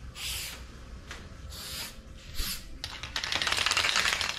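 White Flex Seal aerosol can: a few short hissing sprays, then a fast, dense rattle over the last second, like the can being shaken.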